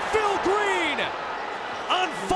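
A broadcast commentator's excited exclamation over arena crowd noise after a made three-pointer. The voice stops about a second in, leaving the crowd's steady murmur.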